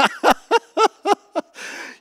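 A man chuckling into a handheld microphone: about five short 'ha' pulses, then a breathy exhale near the end.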